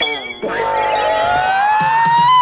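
A comedic sound effect: one long, high, whistle-like tone that starts about half a second in and slowly rises in pitch.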